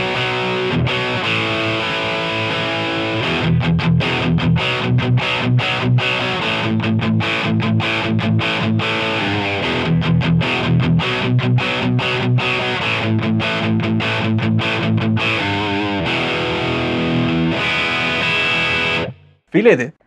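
Electric guitar played through a Brit Silver amp simulation with a moderately distorted tone, recorded direct through the audio interface. He strums chords, with passages of short, choppy stopped chords in the middle, and the sound cuts off suddenly about a second before the end.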